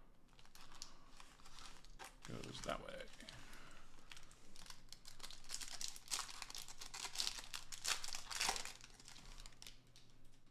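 Foil trading-card pack wrappers crinkling and tearing as they are ripped open by hand, a dense run of irregular crackles.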